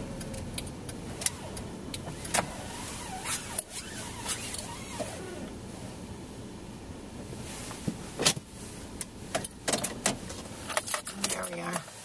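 Car engine idling heard from inside the cabin as the car comes to a stop and sits parked, with a run of sharp clicks and knocks in the second half.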